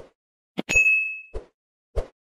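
Sound effects of an animated subscribe button: a few short clicks, and about two-thirds of a second in a single bright notification ding that rings for about half a second.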